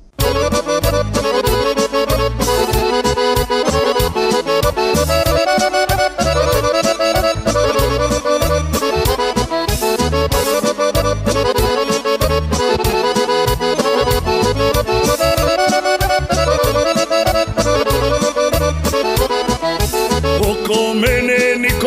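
Instrumental introduction of a Krajina folk song, a band playing a lively melody over a steady beat and bass line, starting suddenly and running without vocals.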